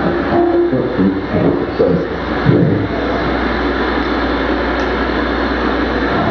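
Live experimental electronic noise: a dense, steady rumbling wash of noise, with broken fragments of a voice in the first few seconds that then fade into the unchanging drone.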